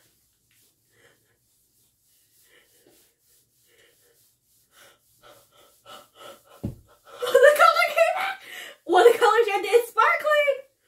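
A woman's wordless gasps, building from short quick breaths into two loud, wavering excited cries in the last few seconds.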